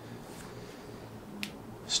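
Quiet room with a single short, sharp click about one and a half seconds in.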